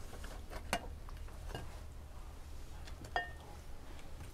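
A metal slotted spoon clicking lightly against a glass bowl and a glass plate, three separate clicks, the last with a short glassy ring, over a low steady hum.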